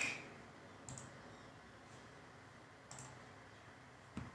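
Two faint computer mouse clicks, about two seconds apart, over quiet room tone.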